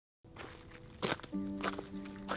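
Footsteps crunching on a rocky dirt trail, a few separate steps. A held music chord comes in about two-thirds of the way through.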